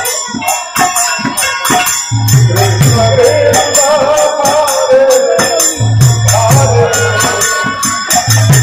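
Bengali nam kirtan music: khol barrel drums and jingling hand cymbals played in a fast, even rhythm under a sustained, wavering melody. The deep drum strokes are thin for the first couple of seconds, then come in strongly.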